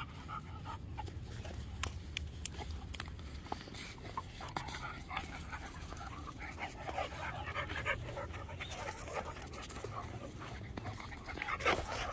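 A Cane Corso and a pit bull panting as they play-wrestle, with scattered small clicks and scuffs.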